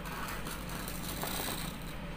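Pencil scratching over sandpaper as it traces around the edge of a cardboard stencil, in short uneven strokes over a steady low hum.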